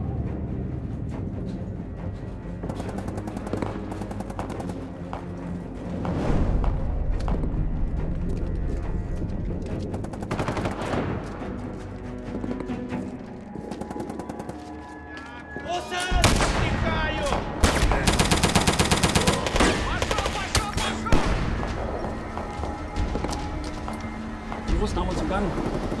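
Battle sound effects in a war-film soundtrack: scattered gunshots over a music score, growing heavier about two-thirds of the way through, with one long, rapid machine-gun burst lasting about a second and a half.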